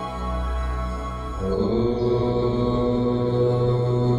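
Devotional background music with chanting, in long held notes that move to a new, louder chord about a second and a half in.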